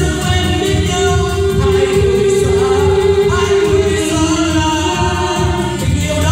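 A man singing through a microphone and PA, holding one long note for about three seconds, then dropping to a lower held note, over keyboard accompaniment with a steady beat.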